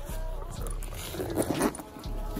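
Handling noise of a fabric bag being rummaged and shifted close to the microphone, with a few louder rustles in the second half.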